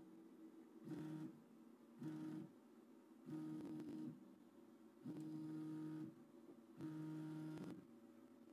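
Anet A6 3D printer's X-axis stepper motor driving the print-head carriage in five separate moves during a movement test. Each move is a faint, steady hum lasting half a second to a second, with short pauses between them.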